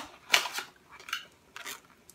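A cardboard box of phở spice packets being handled, giving a few short papery rustles, the loudest about a third of a second in.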